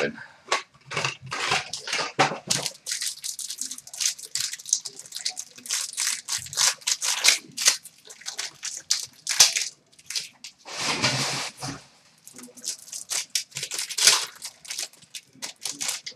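Trading-card box and packs torn open by hand: a quick run of crinkling, crackling and ripping of wrapper and cardboard, with a few longer tears.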